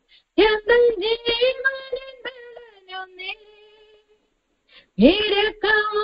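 A woman singing a slow gospel song. She holds a long note near the middle, pauses for about a second, then sings on near the end.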